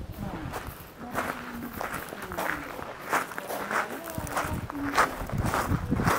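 Footsteps crunching on a gravel path at a steady walking pace, a little under two steps a second.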